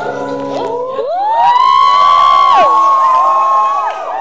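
Audience cheering and whooping over piano music, with one long high-pitched shriek that rises about a second in, holds for over two seconds and falls away near the end.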